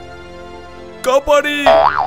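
A soft, sustained background music chord. About a second in, a cartoon voice starts crying out for help again, and near the end a springy, swooping boing sound effect overlaps it.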